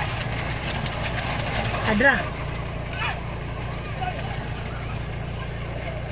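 Car engine running with a steady low rumble, heard from inside the cabin, with short shouts from people outside about two seconds in and again a second or two later.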